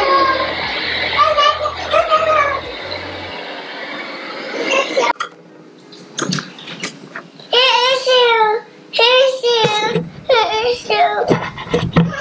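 A toddler's high voice babbling and calling out in several short bursts through the second half. Before that, a steady hiss lasts about five seconds, with a voice faintly over it.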